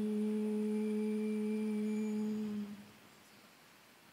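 A voice holding one long, steady note of chanted Quranic recitation (tilawah), which ends about two and a half seconds in.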